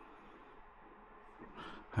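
Quiet room tone, with a brief soft noise near the end.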